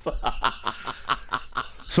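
A man laughing quietly, a rapid run of short breathy chuckles, about eight a second.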